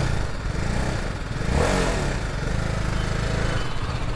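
BMW G 310 RR motorcycle's single-cylinder engine idling steadily, just restarted, with the bike standing still.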